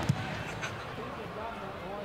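Steady crowd murmur at a rugby league ground, with faint overlapping voices and no clear single speaker.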